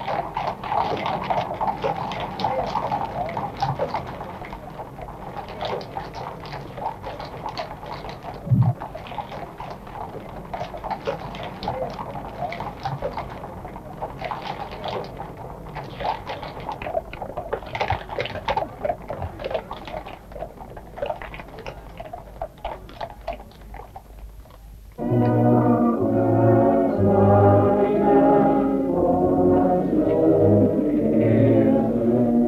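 Horses' hooves clopping irregularly on a paved road amid crowd noise as mounted riders pass. About 25 seconds in, a brass band starts playing suddenly and much louder.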